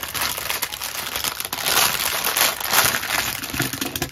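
Clear plastic bag crinkling as hands open it and pull out the hard plastic kit pieces, with continuous crackling throughout.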